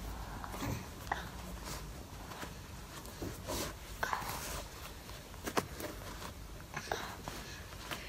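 Low room sound with scattered faint clicks and knocks, the handling noise of small movements close to the microphone.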